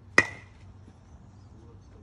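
Metal baseball bat hitting a ball off a batting tee: one sharp crack about a fifth of a second in, with a brief metallic ping ringing after it.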